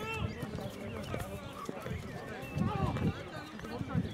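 Players and onlookers shouting across an open football pitch during play, with a few short knocks among the calls.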